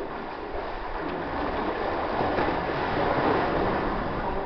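Steady rushing of sea surf, echoing among the granite boulders, swelling slightly about three seconds in.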